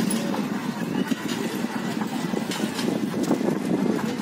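Steady outdoor street noise with faint voices mixed in.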